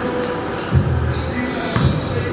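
Basketball dribbled on an indoor gym floor: two bounces about a second apart.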